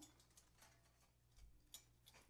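Near silence, with a few faint ticks and rustles from florist wire and a tin sign being handled against a grapevine wreath.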